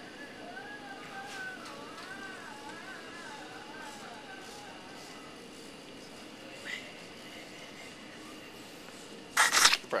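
A faint song with a singing voice, its melody wavering for the first few seconds over a steady background hum. Near the end there is a loud, brief knocking and rubbing of the camera being handled.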